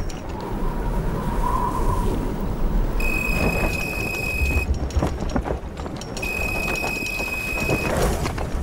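Telephone ringing: two long, steady electronic tones, each about a second and a half, the second starting about three seconds after the first, over a constant low rumble. A fainter, lower steady tone sounds in the first two seconds.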